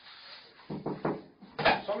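Short, broken bursts of a man's voice speaking Portuguese in a small room. It starts quietly and grows loudest near the end, as he says "só um" ("just a").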